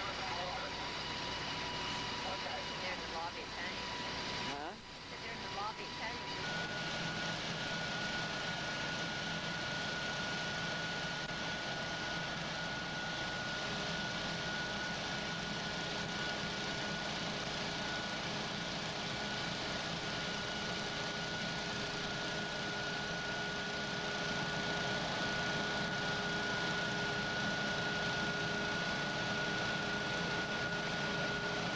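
Fire engines running, a steady engine drone with a steady whine above it. About five seconds in the sound dips briefly and the whine comes back higher, with a second, lower steady tone joining about halfway through.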